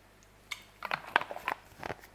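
A person drinking from a bottle and handling it: a quiet start, then an irregular run of short clicks and knocks, the loudest about a second in.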